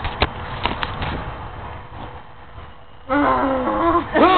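A few sharp knocks in the first second from a hand handling the camera close to its microphone, over faint outdoor background noise; near the end a person groans "ugh".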